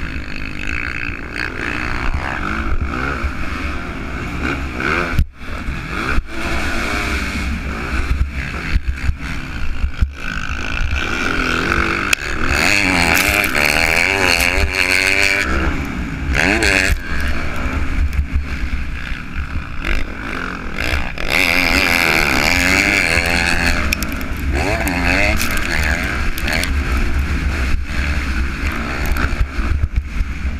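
Motocross bike engine revving hard up and down as the rider races around a dirt track, with the revs rising and falling over and over and cutting out briefly about five and ten seconds in.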